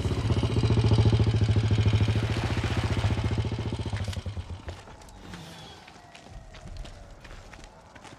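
Motorcycle engine running with a rapid, even firing beat, loudest about a second in, then fading away after about four seconds.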